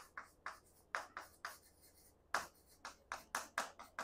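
White chalk writing on a green chalkboard: a faint, uneven run of short taps and scrapes, one for each stroke as a line of joined-up handwriting goes on the board.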